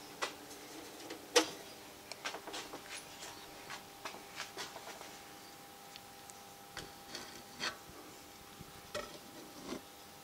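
Scattered light clicks, taps and rubbing from handling equipment at irregular times, the sharpest about a second and a half in. Under them runs a faint steady electrical hum.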